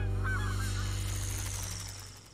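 A flock of geese honking as they fly past, a cartoon sound effect, with a held low musical chord beneath that fades away toward the end.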